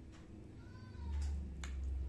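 Metal spoon clicking and scraping against a ceramic plate while scooping curry and rice: two light clicks in the second half over a low rumble. Just before them, a short high call rises and falls, like a cat's meow.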